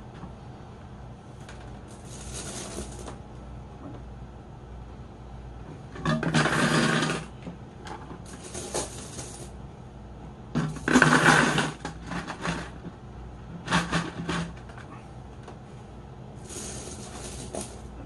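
Handling noise from plastic fishbowl kit parts and airline tubing: about half a dozen short bursts of rustling and scraping, the loudest about six and eleven seconds in, over a steady low hum.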